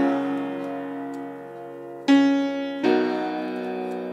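Soloed acoustic piano track playing sustained chords. One chord is struck just before the start and rings down, another about two seconds in, and a third a moment later. The sound is thin, with its deep bass filtered away by the mix EQ.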